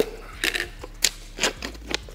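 A new plastic tub of flake fish food being opened: the lid is pried off and the seal torn, giving a handful of sharp plastic crackles and clicks.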